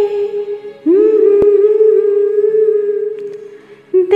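A woman's voice holding long sung notes: one note fades away, then about a second in she slides up into a new note and holds it steady for about three seconds before it fades out.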